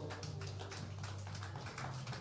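Faint, scattered clapping from a congregation over a low steady hum.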